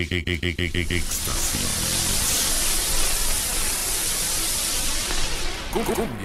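DJ transition effects on a sound system: a fast stuttering repeat of a short sound, about eight pulses a second, for the first second, then a steady wide hiss of white noise for about four seconds that fades out near the end.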